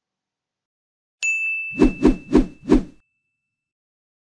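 Channel-logo sound-effect stinger: about a second in, a bright ding that rings on steadily, with four quick heavy thumps about a third of a second apart over it.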